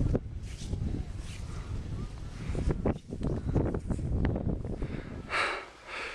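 Wind buffeting a small camcorder's microphone on an open mountain summit: an uneven low rumble, with a short breath of hiss a little after five seconds in.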